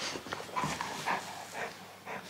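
A golden retriever making a series of short vocal sounds while being stroked.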